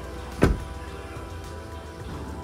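A car door pushed shut, a single solid thump about half a second in.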